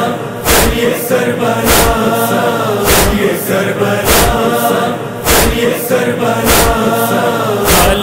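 A noha, the Shia lament chant, sung by voices in chorus in long, drawn-out held lines. Under it runs a steady beat of heavy thumps, a little under two a second, with every second thump stronger.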